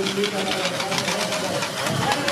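Rapid, even jingling of the small bells on the marching carnival fools' patchwork costumes, with voices mixed in.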